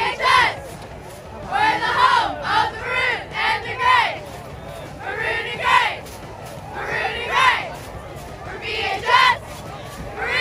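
Cheerleaders shouting a cheer together, a series of short shouted phrases with brief gaps between them.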